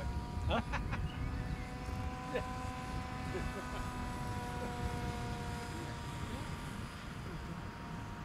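Hobbyking Super G RC autogyro flying overhead, its motor and propeller giving a steady hum with a low rumble beneath.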